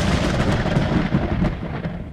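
Fiery explosion sound effect: a dense, rough rumble with strong low end that eases slightly toward the end.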